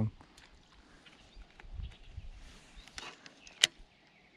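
Faint handling and movement sounds of a person on a grassy bank: soft rustles, a low thump about two seconds in, and one sharp click near the end as a baitcasting reel is taken in hand.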